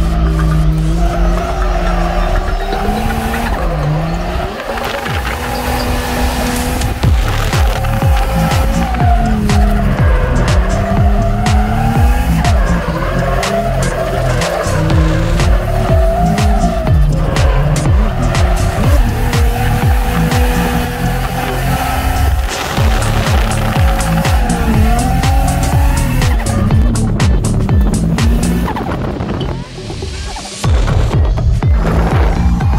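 Turbocharged RB30 straight-six of an R31 Skyline drift car revving hard, with tyres squealing in long wavering, rising and falling slides, heard from inside the car with a music track laid over it.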